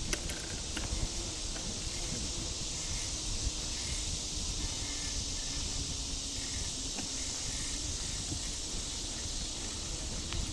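Steady noise of riding a bicycle along a paved trail: wind buffeting the microphone and tyres rolling on asphalt, under a constant high hiss, with a few faint ticks.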